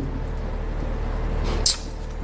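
Steady low background hum and rumble in a pause between speech, with a short hiss about one and a half seconds in.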